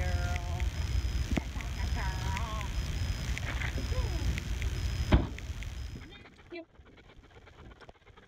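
Wind buffeting the microphone, with a few faint, wavering distant voice-like calls over it. A sharp knock comes about five seconds in, the loudest moment. Soon after, the sound drops away to a low hush.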